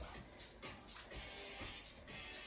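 Faint background workout music with a steady beat, about two beats a second.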